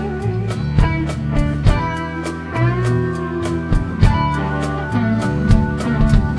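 A live funk rock band playing: electric guitar lines with bent notes over a steady drum-kit beat, bass and keyboards.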